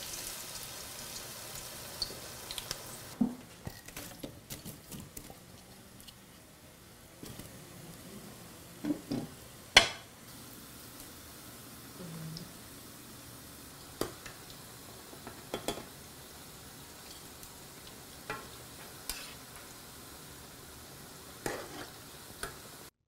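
Potato balls deep-frying in very hot lard in a pan, a steady sizzle, with scattered clicks and knocks of a metal spoon against the pan, the loudest about ten seconds in.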